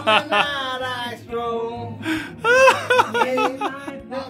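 A person's voice, talking with chuckling and laughter.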